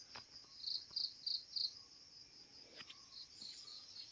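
Faint, steady high-pitched insect drone, with a run of four short, evenly spaced high chirps about a second in.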